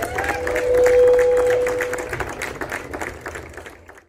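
Audience clapping as a bluegrass song ends, with a single steady held tone over the first two seconds; the applause fades out near the end.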